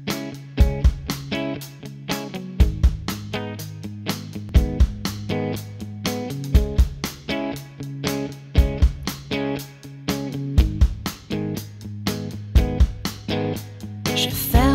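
Instrumental intro of a pop song: picked guitar notes, several a second, over held low bass notes, with a deep hit about every two seconds.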